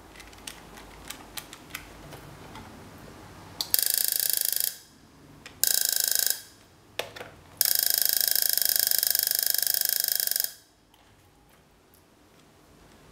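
Homemade EMP device firing: its high-voltage taser supply sparking rapidly across a spark gap into a coil, heard as loud crackling in three bursts, a one-second one about four seconds in, a shorter one near six seconds and a long one of about three seconds. Before the bursts, a few light clicks of calculator keys being pressed.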